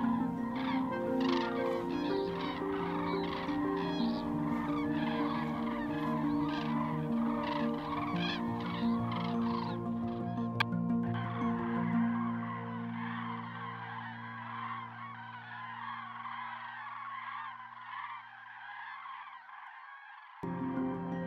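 A flock of common cranes (Grus grus) calling, many overlapping calls at once, over soft background music with long held notes that fades out near the end.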